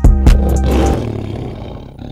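The music breaks off into two heavy low hits, followed by a lion's roar sound effect that fades out over about a second and a half.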